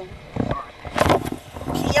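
A scuffle while a resisting woman is pushed into the back seat of a patrol car: short bursts of rustling and bumping with strained, raised voices, and a voice rising near the end.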